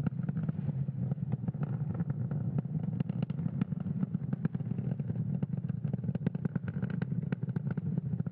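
Falcon 9 first stage climbing on its nine Merlin 1D engines, a steady low rocket roar with dense crackling, as the vehicle flies supersonic toward maximum aerodynamic pressure (Max Q).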